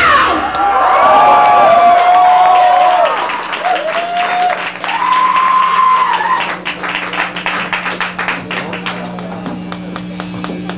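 A live metal band's song cuts off and the club audience cheers with high shouts and whistles, then claps for the last few seconds. A low steady hum runs underneath.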